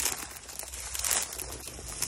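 Dry reed stalks rustling and crackling as someone pushes through them on foot, with a steady low rumble underneath.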